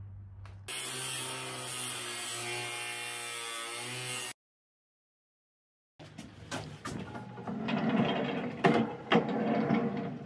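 A sliding barn door rolling along its steel track on wheeled hangers, a rumbling with sharp clicks and knocks, loudest in two knocks near the end. It comes after a steady, evenly pitched whirring sound that stops abruptly, with a moment of dead silence between.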